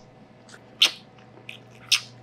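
A dog sniffing at close range: four short sniffs, the second and the last loudest.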